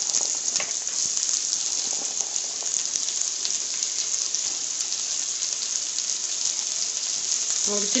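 Freshly chopped shallots sizzling steadily in hot oil with cumin seeds in an aluminium pressure cooker, with faint crackles.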